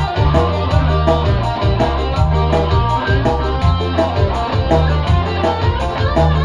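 A live band playing an instrumental passage with no singing: electric keyboard and electric guitar over a heavy, steady bass line and drum beat.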